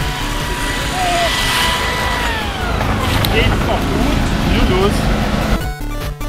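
A hand-held hedge trimmer's motor running with a steady high whine, then winding down about two and a half seconds in, over outdoor street noise and people's voices.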